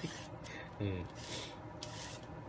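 Serrated shredding peeler scraping strips off a raw carrot in repeated short strokes, each stroke a brief scratchy scrape.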